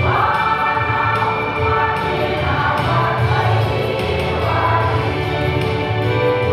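A women's choir singing a gospel hymn together, in sustained, held notes, with a new phrase starting right at the beginning.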